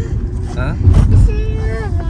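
Steady low road rumble inside a moving car's cabin, with a young girl's voice answering briefly: a short sound a little way in, then a drawn-out high-pitched word in the second half that falls in pitch at the end.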